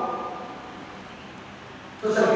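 A man's voice dies away in the hall's reverberation over about half a second, then a faint steady hiss of room tone.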